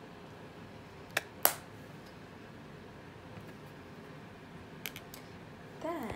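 Two sharp clicks a fraction of a second apart about a second in, then two faint ticks near the end, over a steady low hiss.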